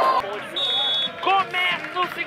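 Voices calling out, with pitch rising and falling, and a brief high steady tone about half a second in.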